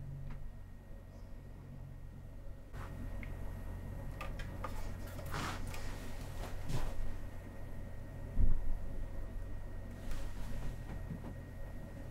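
Handling noise of a solid-body electric guitar being turned over and moved in the hands: scattered soft knocks and rustles over a steady low hum, with one duller thump about eight and a half seconds in.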